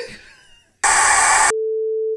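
A laugh trails off, then a loud burst of TV static hits about a second in and cuts abruptly to a steady, mid-pitched test-pattern beep tone, a colour-bars sound effect.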